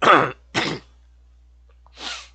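A man clearing his throat: two short bursts in quick succession within the first second, the first the louder.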